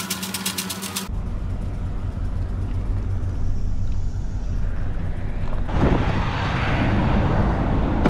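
Chevy 3500 pickup pulling away slowly, its engine a low, steady rumble heard from inside the cab. A rapid, even ticking is heard in the first second, and louder road and wind noise builds up about six seconds in.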